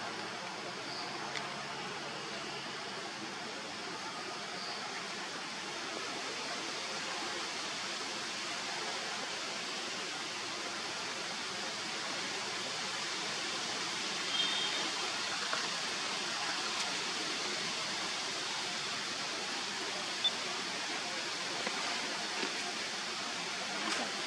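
Steady outdoor background hiss in a forest, with a few faint, short high chirps here and there.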